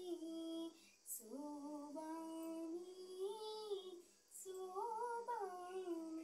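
A girl singing solo without accompaniment: long held notes with slow, ornamented glides, sung in three phrases with short breaths between.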